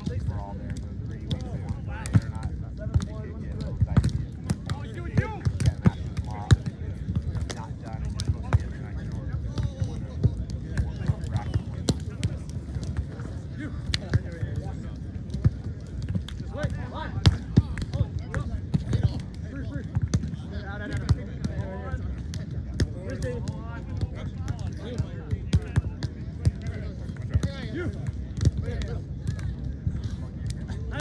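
Beach volleyball play: sharp slaps of hands and forearms striking the ball, heard as many irregular impacts. Underneath is a steady hubbub of people talking and a low rumble.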